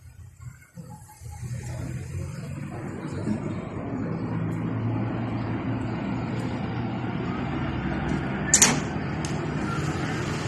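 A motor vehicle's engine running steadily with a low rumble, swelling in over the first few seconds, with a sharp click about eight and a half seconds in.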